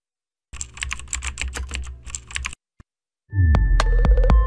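Sound-effect computer keyboard typing: a rapid run of keystroke clicks for about two seconds over a low hum. About three seconds in, a deep whoosh that falls in pitch begins, with electronic tones sustained over it.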